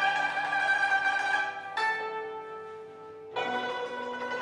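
Chinese yangqin (hammered dulcimer) and guzheng playing traditional music together in held, ringing notes. The notes change about halfway through, the sound fades, and a fresh struck chord comes in near the end.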